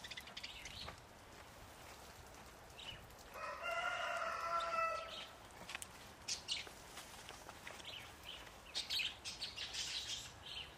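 A rooster crowing once, one call of about a second and a half starting about three seconds in. Light scuffling and clicks near the start and near the end.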